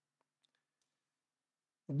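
Near silence in a pause of speech, with a few very faint short clicks in the first second; a man's voice starts again right at the end.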